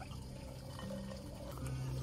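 Water trickling in a hot spring pool, over a steady low hum.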